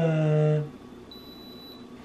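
A brief laugh, then a single thin, high-pitched electronic beep from a digital thermometer, lasting a little over half a second.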